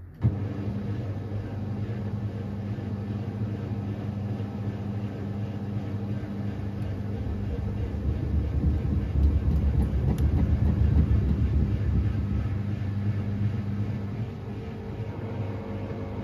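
Samsung front-loading washing machine running mid-cycle: the motor cuts in suddenly with a jolt, then the drum turns with a steady motor hum that grows louder for a few seconds past the middle and eases off near the end.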